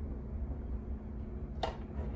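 Quiet indoor room tone with a steady low hum, broken by one brief hiss about a second and a half in.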